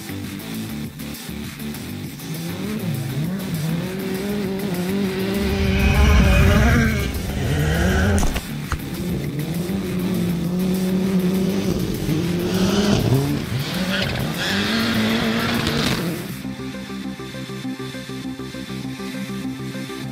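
Rally car engines revving hard and rising and falling through gear changes on a gravel stage, with gravel spraying from the tyres; the loudest pass comes about six to eight seconds in. Background music runs underneath, and the engines drop out about sixteen seconds in, leaving only the music.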